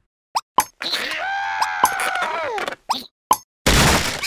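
Cartoon sound effects: two short rising plop-like blips, then a cartoon character's long, held vocal cry that drops in pitch at the end. Two more quick blips follow, and a loud crash comes near the end.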